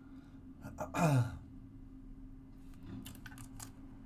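A man's short sigh, falling in pitch, about a second in, then light crinkles and clicks of a clear plastic card sleeve being handled near the end, over a faint steady hum.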